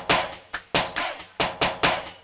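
The live band's drums playing alone in a short break: a steady rhythm of sharp drum strikes, about four a second, with no melody instruments.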